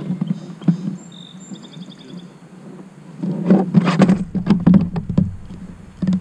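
Knocking and clattering against a kayak as a just-landed smallmouth bass is handled on board, loudest over about two seconds past the middle. A short run of high chirps comes earlier.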